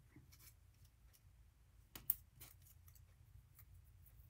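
Faint handling of paper craft pieces on a work mat: soft rustles and a few light clicks, the sharpest pair about two seconds in.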